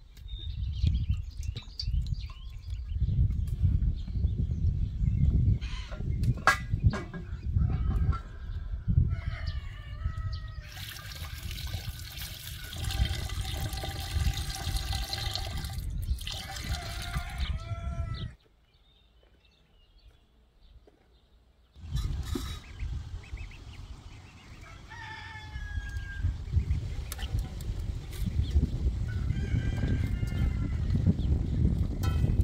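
Water poured from a clay jug into a metal pot, a splashing hiss lasting about six seconds, with chickens clucking and a rooster crowing around it. The sound breaks off to near silence for a few seconds past the middle.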